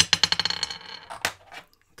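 A die thrown onto a hard desktop, clattering in a quick run of bounces that slows and fades within about a second as it comes to rest, then one more click a moment later.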